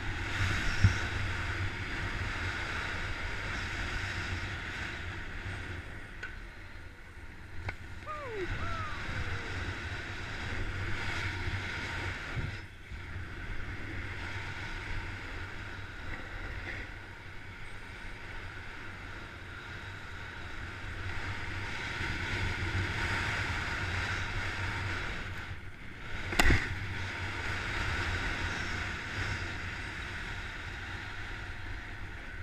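Steady scraping hiss of a rider's edges sliding over packed snow, with low wind rumble on the camera's microphone. A sharp knock stands out near the end.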